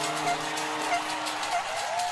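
A held musical chord over a steady wash of studio-audience cheering. The chord drops out about one and a half seconds in, leaving a single high held note under the crowd.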